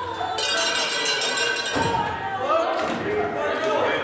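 A brief bright ringing sound with many overtones, lasting about a second and a half, followed by voices calling and talking.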